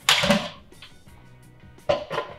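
A kitchen spoon clattering against a food processor's plastic bowl as ingredients go in: a short loud scrape at the start and a sharp knock near the end. Soft background music plays underneath.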